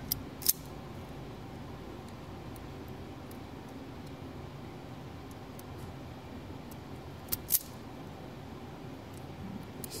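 Sharp clicks of a hand crimp-and-strip tool snapping shut on a wire as the insulation is trimmed off the end: a pair at the start, the louder about half a second in, and another pair about seven and a half seconds in, over a steady low hiss.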